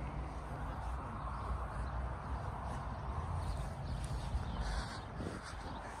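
Tractor engine idling steadily nearby, a low even hum that fades away about five seconds in.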